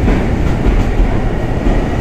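Loud, steady rumble of an electric train at a platform.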